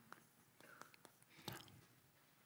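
Near silence, with a few faint ticks of chalk on a chalkboard near the start.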